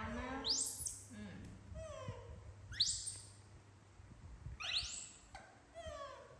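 Pets calling while they wait to be fed: three sharp, high squeaks that sweep quickly upward, about two seconds apart, between lower falling cries.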